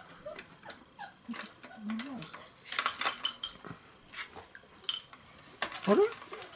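Scattered light clinks and taps, thickest about halfway through, as puppies move about among the hanging plastic toys of a baby play gym and the wire pen panels.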